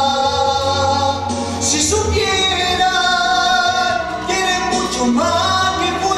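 A man singing live into a microphone, holding long sustained notes. The pitch shifts about two seconds in and slides upward about five seconds in.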